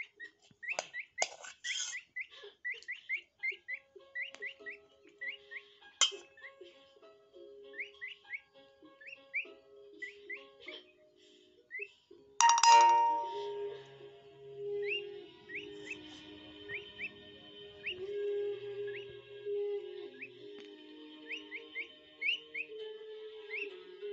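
Peafowl chick peeping: a long string of short, rising chirps repeated every second or so. A sudden loud ringing sound cuts in about twelve seconds in.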